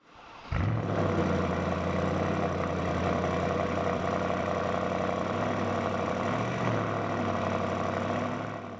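2023 Bentley Flying Spur V8S's twin-turbo V8 heard at the exhaust, coming in sharply about half a second in and then idling steadily with a deep, throaty note, with two slight rises in pitch in the second half.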